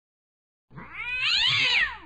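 A cat's drawn-out meow: one call that rises and then falls in pitch, starting and stopping abruptly as an inserted sound effect.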